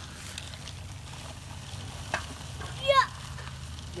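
Dry bagged concrete mix pouring out of the bag into a post hole around a wooden fence post: a steady grainy hiss, with a low steady hum underneath.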